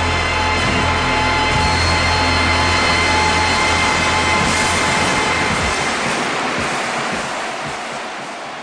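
Large stadium crowd cheering, with steady music under the roar. It eases off over the last couple of seconds.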